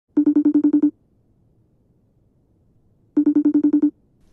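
An incoming-call phone ringtone: two short trilling bursts about three seconds apart, each a quick run of about eight beeps at roughly ten a second.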